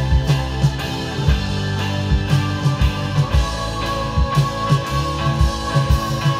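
Synthesizer keyboard solo played over a full band backing track with drum kit and bass; a long high note is held from about two seconds in.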